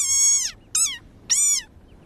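Desert rain frog squeaking its angry defensive cry. It gives three high-pitched squeaks, each falling in pitch: a long one already under way that ends about half a second in, then two short ones about half a second apart. It sounds like a dog toy.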